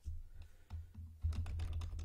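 Typing on a computer keyboard: a quick run of key clicks starting about half a second in, over a low rumble.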